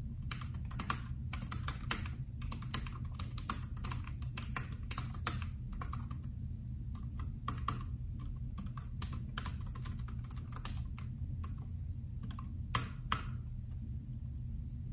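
Typing on a Bluetooth computer keyboard: a steady run of key clicks at an uneven pace, with two louder key strikes near the end.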